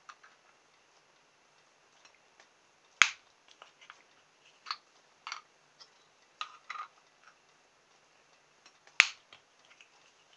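Small plastic clicks and taps as plastic bottle caps are handled and fitted onto a wooden barbecue skewer. Two sharp clicks stand out, about three seconds in and near the end.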